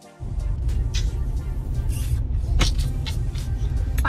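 Steady low road rumble inside a moving car's cabin, setting in suddenly just after the start, with a few light clicks over it. Background music plays along.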